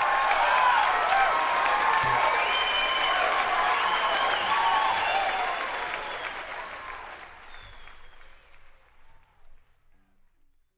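Live concert audience applauding and cheering at the end of a song, with shouts and whistles over the clapping; the applause fades out from about six seconds in.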